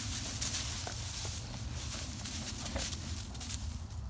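Dry fallen leaves rustling and crunching in quick, irregular crackles as a large dog digs, pounces and scrambles through them, its paws scuffing the ground.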